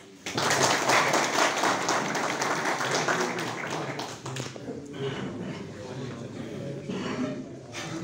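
Audience applauding in a small room: the clapping starts abruptly, is loudest for the first few seconds and fades out after about four seconds, leaving low voices.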